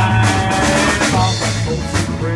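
A live band playing country rock, with electric guitar over a steady drum-kit beat between sung lines.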